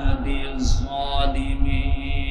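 A man chanting a Quranic verse in a drawn-out, melodic voice through a public-address system, with a steady low rumble underneath.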